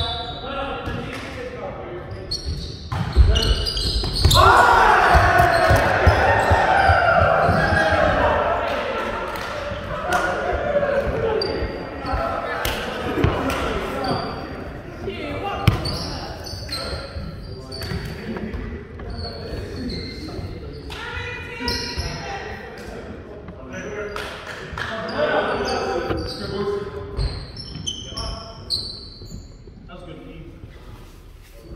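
Indoor volleyball play echoing in a gymnasium: players shouting and calling out, with a loud stretch of shouting about four seconds in. Through it run ball hits and thuds and short high squeaks of sneakers on the hardwood floor.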